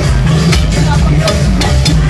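Loud electronic dance music with a heavy bass beat, over crowd chatter, with a few sharp clicks in the second half.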